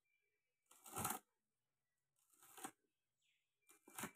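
Fresh taro (colocasia) leaves being torn and stripped of their stringy fibres by hand. Three short rustling tears come about a second and a half apart.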